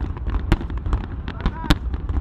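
Fireworks going off in a run of sharp bangs and pops, the two loudest about half a second in and about three-quarters of the way through.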